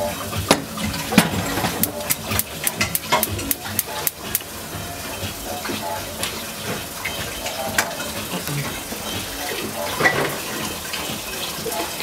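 Butter sizzling in a small saucepan, with a quick run of sharp crackles and spits in the first few seconds, then a steadier sizzle.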